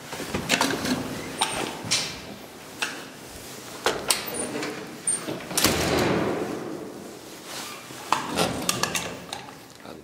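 Elevator's metal mesh cab gate being opened by hand at the landing: a series of sharp latch and interlock clicks and metal clatter, with a longer sliding rattle about halfway through as the gate opens.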